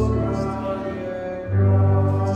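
A man singing a slow worship song with sustained notes, accompanied by a Casio keyboard played in a piano voice; a new low chord comes in about one and a half seconds in.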